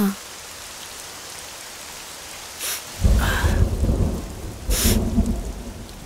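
Steady rain, then a loud, low roll of thunder that breaks in about three seconds in and rumbles on to the end.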